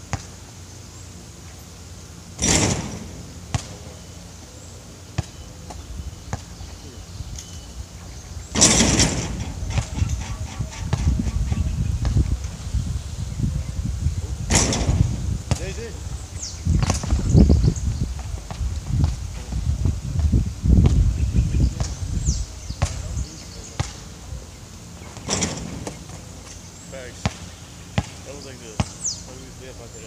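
Basketball bouncing and hitting on a hard outdoor court, with a few sharp hits spread through, about two to six seconds apart, and a stretch of low rumbling noise in the middle.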